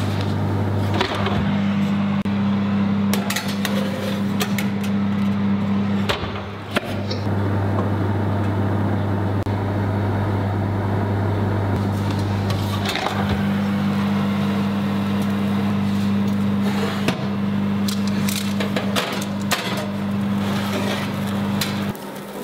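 Electric oven running with a steady low hum from its motor and fan, with scattered small clicks and ticks over it.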